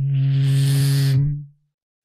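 A beatboxer holding one low sung note with a strong breathy hiss over it for about a second and a half, then letting it die away.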